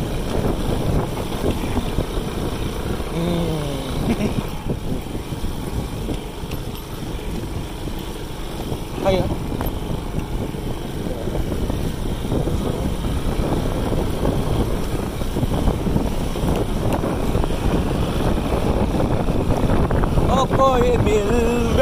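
Motor scooter riding along a gravel road: a steady low rumble of the engine and tyres on loose stones, mixed with wind noise on the microphone.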